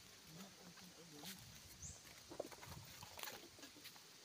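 Near silence: a faint voice murmurs in the first second or so, with a few soft ticks and a short high chirp about two seconds in.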